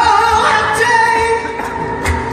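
Female flamenco singer singing bulerías live, drawing out a long wavering sung line over a band with electric guitars and bass.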